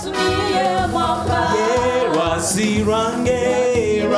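Gospel worship song performed live: a male lead voice with a female backing singer, sustained sung lines over accompaniment from a Yamaha PSR-S770 arranger keyboard.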